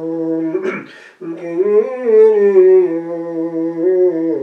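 A single male voice chanting Gregorian chant, holding long notes that move slowly up and down in small steps, with a pause for breath about a second in.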